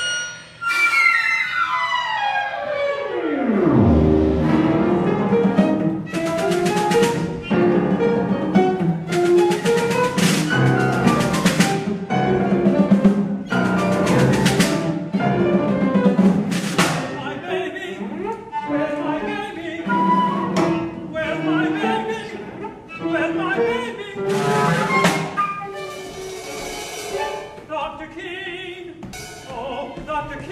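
A small live instrumental ensemble playing contemporary opera music. It opens with a sharp attack and a long falling glide in pitch lasting about four seconds, then moves into held chords with bowed strings and repeated percussion strikes.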